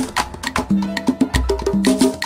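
Cuban salsa music in a short instrumental break with no singing: sharp percussion hits over short bass notes.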